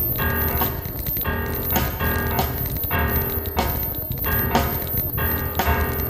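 Contemporary chamber music for two pianos and percussion, played live: a steady pulse of sharp, metallic-sounding strikes, about two a second, over sustained pitched tones.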